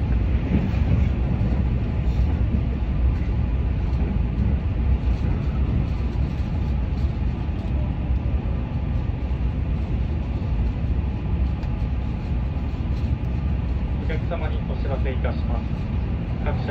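Steady running noise of a Keihan limited express train at speed, heard from inside the passenger car, mostly low-pitched with no breaks.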